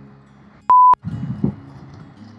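A single short censor bleep: a pure beep tone near 1 kHz lasting about a quarter of a second, switching on and off abruptly.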